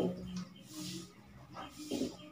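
Marker writing on a whiteboard: short scratchy strokes, with squeaks and a couple of light taps as letters are formed.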